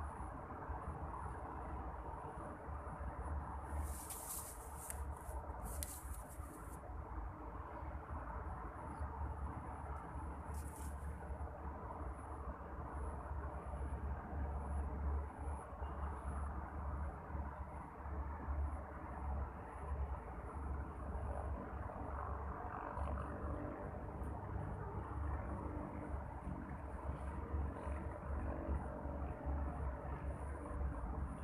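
Outdoor background noise by the water: a steady low rumble and hiss, with a faint high-pitched whine that comes and goes. A few brief rustles fall about four to six seconds in and again around ten seconds.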